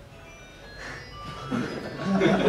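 A short, quiet tune of thin, high single notes, one after another. A man's voice comes in near the end.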